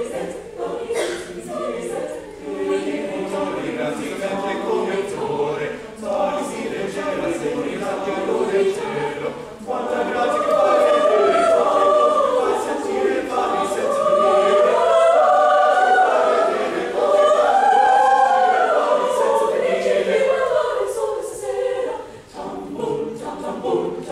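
Mixed high school chamber choir of young male and female voices singing in parts, growing louder about ten seconds in and easing off again near the end.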